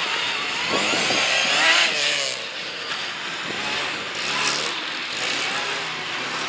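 A Mini's engine revving up and down several times, out of sight, as the car comes onto the stunt course.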